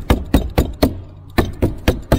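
Hammer stapler driving staples through synthetic roofing underlayment into an OSB roof deck: quick sharp strikes, about four a second, seven in all with a short pause in the middle.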